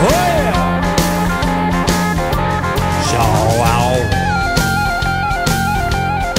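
Instrumental break of a country-blues rock song: guitar playing over a steady drum-kit beat, with notes that bend in pitch.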